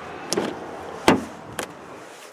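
Side door of a 2011 Kia Sorento being unlatched by its outside handle and swung open: three short clicks, the loudest a little after a second in.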